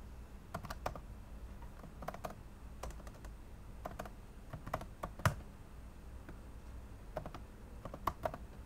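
Typing on a computer keyboard: keystrokes in short clusters of two or three with pauses between, one key struck harder a little past the middle.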